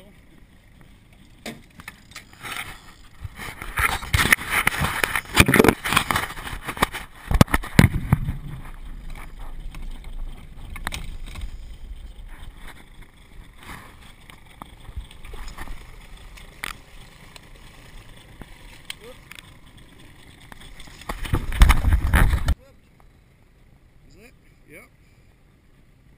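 Brown trout being netted beside a small boat: water splashing, with sharp knocks and rattles of gear against the boat, loudest in the first third. A second loud burst near the end cuts off abruptly.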